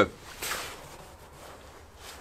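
A brief soft rustle of clothing about half a second in, as a person in a work jacket shifts position, then faint outdoor background.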